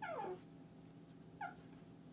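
Shih Tzu vocalizing: a short call that slides down in pitch right at the start, then a second, briefer one about a second and a half in.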